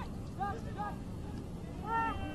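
Field-level sound of a soccer match: a few short shouts from players over a low, steady rumble of stadium ambience.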